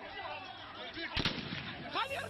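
Two gunshots in quick succession about a second in, among shouting voices: live fire on a street protest.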